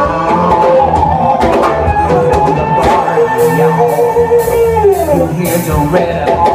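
Live rock band playing loudly: drum kit, electric bass and guitar, with sustained melody lines.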